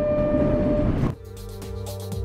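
Rumbling ride noise of an elevated people-mover train with a steady whine over it, cut off sharply about a second in by background music with a steady beat.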